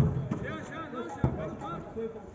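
A football kicked close by with a loud thump, then a weaker thud about a second later, with players' voices calling across the pitch.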